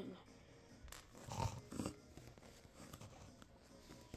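Mostly quiet, close-miked room tone inside a small enclosed space, with two brief faint rustles about a second and a half in.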